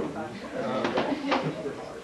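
Indistinct voices talking in a room, not clear enough to make out words, with a few short sharp sounds near the middle.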